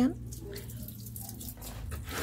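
Water from a garden hose splashing softly onto potted plants and their pots as they are watered.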